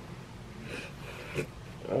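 Quiet room with a few short, faint breathy sounds from a person, such as sniffs or stifled breaths, the last and loudest near the end.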